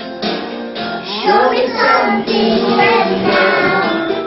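Music with children singing along.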